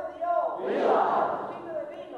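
Crowd shouting in call and response: a single voice calls out, and the crowd answers with a loud shout together about a second in, before the lone voice calls again near the end.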